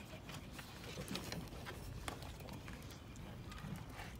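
Faint, scattered light clicks and taps from huskies moving about on a wooden deck, over a steady low rumble.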